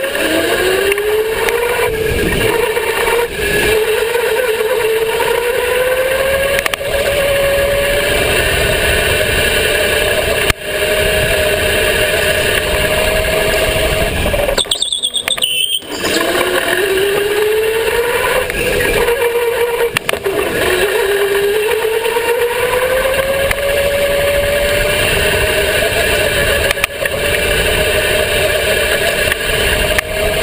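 Electric go-kart motor whining under way, its pitch climbing slowly over several seconds on the straights and dropping back into the corners, over steady wind and track rumble. The sound cuts out for about a second halfway through.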